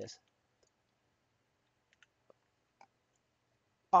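A few faint computer mouse clicks, spread over about a second midway through, in near silence.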